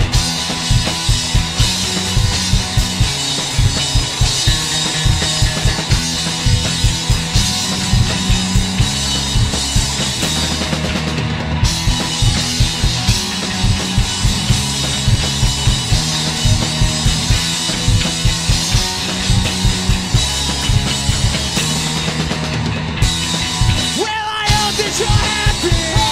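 A punk rock trio playing live without vocals: distorted electric guitar and electric bass over a drum kit keeping a steady, driving beat.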